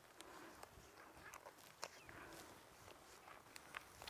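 Near silence: faint outdoor ambience with a few small scattered clicks.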